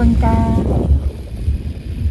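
Low, steady rumble of a car heard from inside the cabin, with a short spoken word near the start.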